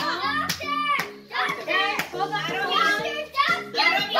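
Children talking and calling out excitedly over music with steady held notes, with a few sharp clicks of handling.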